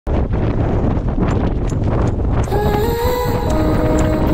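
Strong gusty wind buffeting the microphone, then electronic pop music with a held synth melody comes in about two and a half seconds in.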